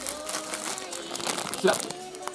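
Plastic wrapper of a packaged custard bun crinkling as it is picked up and handled.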